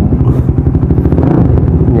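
Motorcycle engine idling with a steady, rapid firing beat.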